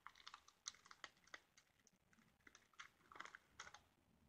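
Faint, irregular typing on a computer keyboard: a string of light key clicks with short pauses between them.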